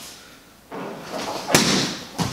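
A spinning back kick landing on a handheld kick shield: one sharp impact about one and a half seconds in.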